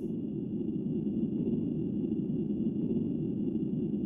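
A steady low rumbling drone, an even noise with no clear pitch, with two faint thin high tones held above it.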